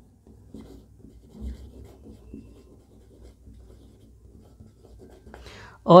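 Faint scratching of a marker pen drawing on a whiteboard, in short irregular strokes. A man's voice starts right at the end.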